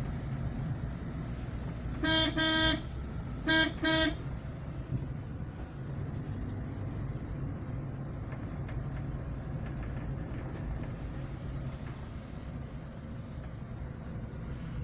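Car horn sounding two quick double toots about a second and a half apart, over the steady engine and road rumble of the car heard from inside the cabin.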